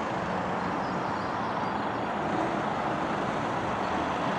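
Steady, even traffic noise from a nearby road, with no distinct passing vehicle standing out.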